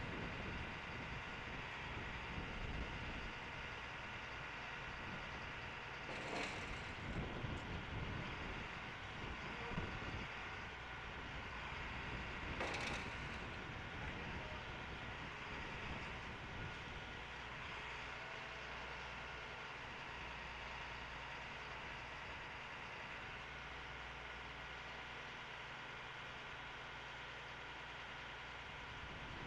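A vehicle engine running steadily at a low level, with two short sharp clicks about six and thirteen seconds in.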